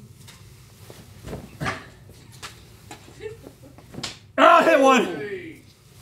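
A thrown playing card smacks sharply into something about four seconds in. A loud vocal exclamation follows straight away and lasts about a second.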